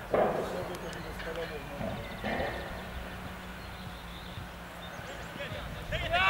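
Voices calling out across a football pitch during play, with short shouts near the start and again about two seconds in, over a steady low hum and open-air background noise.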